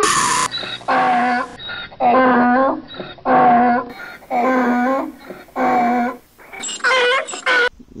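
Donkey braying: a run of about five drawn-out calls, each just under a second long with short breaks between, then a higher-pitched call near the end.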